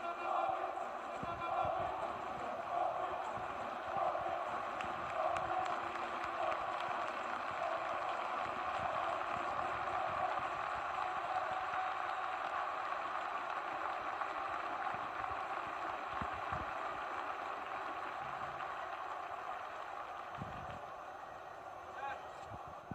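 Ice hockey arena crowd: many voices blend into a steady din, with chanting in the first several seconds, slowly fading toward the end.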